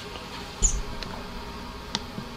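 Handling noise as the recording camera is reached for and moved: a bump with a short squeak about two-thirds of a second in, then a few small clicks, over low room tone.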